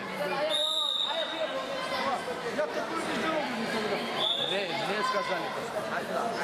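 Overlapping chatter and calls of spectators and coaches in a large, echoing sports hall. A short, high, steady whistle sounds about half a second in, and a briefer one a little after four seconds.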